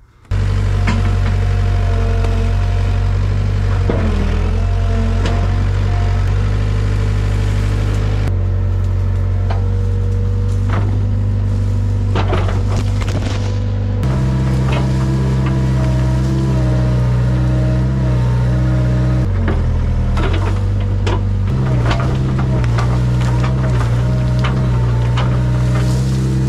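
Hitachi EX75UR-3 mini excavator's diesel engine and hydraulics running steadily under load while the bucket pushes through brush, with repeated sharp cracks and snaps of branches. The swing drive runs without grinding or jumping now that its gear housing has been cleaned out.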